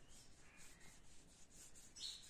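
Very faint rubbing of a paintbrush's bristles dragged across paper, in repeated strokes as paint is brushed on.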